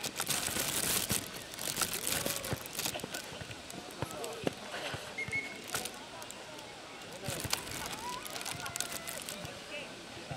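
Players' voices calling out on a futnet court, with a few sharp knocks of the ball being struck, the loudest about four and a half seconds in.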